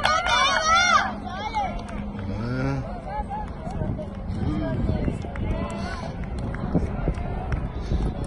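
Children's voices: loud high-pitched shouting for about the first second, then scattered chatter, over a low rumble.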